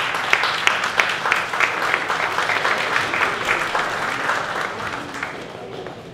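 Audience applauding: dense clapping that thins out and fades over the last second or so.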